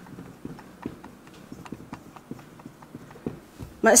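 Marker pen tapping and scraping on a whiteboard while writing: a string of light, irregular clicks.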